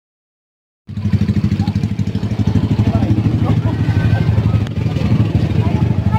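A vehicle engine running close by, a fast steady low pulsing that cuts in suddenly about a second in, with faint crowd voices behind it.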